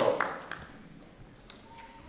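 A pause in a man's speech through a hall's PA: the end of his last word dies away in the room's echo, then low room tone with a few faint taps at the lectern.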